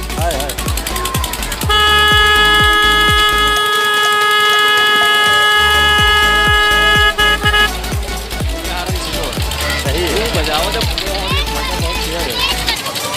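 A horn sounding one steady, unbroken note for about six seconds, starting near two seconds in, over dance music with a beat. Children's voices come in toward the end.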